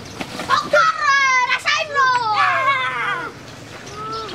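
Several children shouting and cheering together, long wordless calls that mostly fall in pitch, lasting about three seconds.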